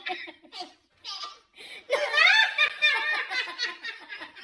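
A man's hearty belly laughter: short breathy bursts, a brief catch of breath about a second in, then a loud rising whoop of laughter about two seconds in that runs on in rapid pulses.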